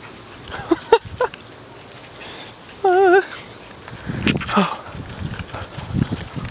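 Young toy schnauzer puppies yipping and whining in play: a few short rising yips about a second in, a wavering whine about three seconds in, and scuffling yelps from about four seconds on.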